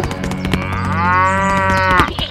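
A cow mooing: one long moo whose pitch rises and then falls, after a short lower call at the start, over a quick run of clicks.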